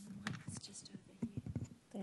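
Faint, low speech, whispered or murmured in short broken snatches.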